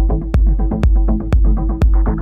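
Electronic music with a steady beat of about two hits a second, each with a deep falling thump, over a sustained low bass and a held synth tone.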